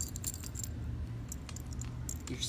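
Metal medallion necklace clinking and jingling lightly in the hand as it is lifted and shown, a few faint scattered clinks.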